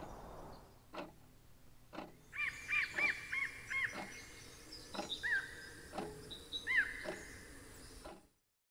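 Bird calling in woodland: a quick run of five short, arching chirps a couple of seconds in, then single chirps later. Faint clicks come roughly once a second over a soft outdoor hiss.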